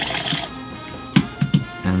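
Soda water poured into a stainless steel cocktail shaker, trickling briefly and stopping about half a second in, followed by a few sharp knocks about a second later. Quiet background music plays underneath.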